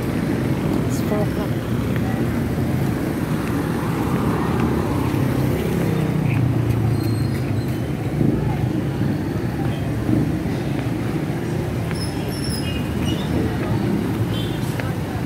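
Steady low rumbling background noise, with faint indistinct voices mixed in.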